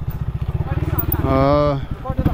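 Dirt bike engine running at low revs with an even, rapid pulse, coming in suddenly at the start as the bike crawls down a steep, rough trail. A drawn-out shout rises over it near the middle.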